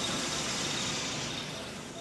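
Steady outdoor street noise, an even hiss like distant traffic, fading down near the end.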